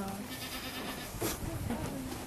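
Goats bleating faintly at close range, with no clear speech over them.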